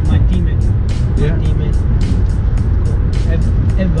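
Steady low road rumble inside a moving car's cabin, under background music with a quick, even beat of about four ticks a second.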